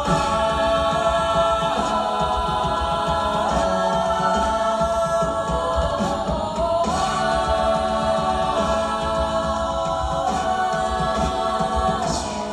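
A mixed-voice a cappella group singing held chords in close harmony, the chord shifting every couple of seconds.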